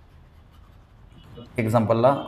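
Faint scratching of a pen or stylus, then a man's voice starts speaking about one and a half seconds in.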